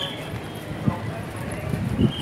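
Indistinct background voices with a few dull low thumps.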